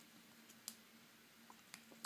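Near silence with a few faint, sharp ticks of a micro-knit stylus tip tapping and writing on an iPad's glass screen, over a faint steady hum.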